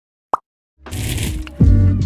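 Channel intro jingle: one short pop, then music comes in just under a second later with a bright swell over steady bass notes and a low hit near the end.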